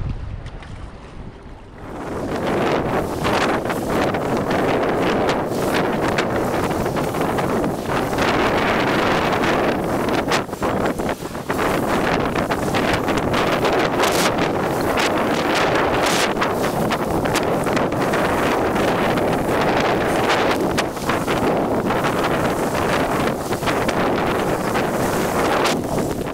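A heavy downpour of rain with wind gusting across the microphone, setting in suddenly about two seconds in and staying loud and steady.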